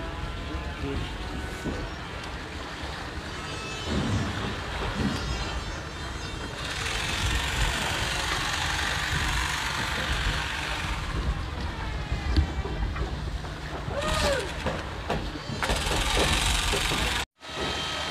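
Outdoor shoreline ambience: wind rumbling on the microphone and a rushing noise that grows louder from about six to eleven seconds in, with faint distant voices.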